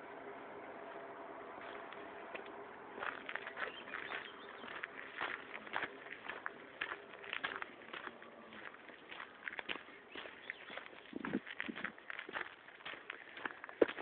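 Footsteps crunching on a dirt and gravel trail: irregular steps, a few a second, starting about three seconds in. Under them is a faint steady hum that fades out past the middle.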